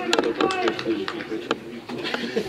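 Voices of footballers and spectators calling out across the pitch, with a few sharp knocks among them, the clearest about one and a half seconds in.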